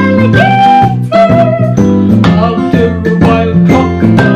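A woman singing a children's goodbye song with held notes over a steady instrumental backing.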